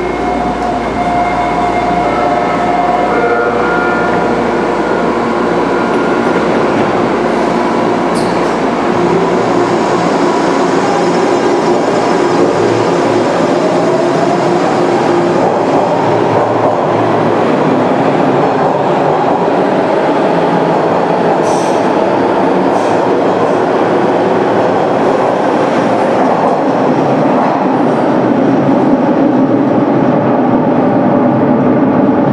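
Hawker Siddeley H5 subway train pulling out of a station. Its traction motor whine rises in pitch as it accelerates, over the growing rumble of wheels on the track as the cars run past and into the tunnel.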